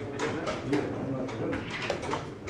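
Chess pieces being set down and the clock tapped in a blitz game: a run of sharp, irregular clicks over a low, wavering tone.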